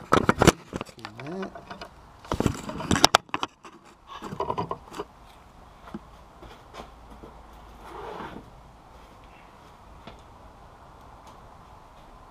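Clicks, knocks and scrapes of a GoPro camera in its case being handled and set in place, in bursts over the first five seconds, then a faint steady background hum.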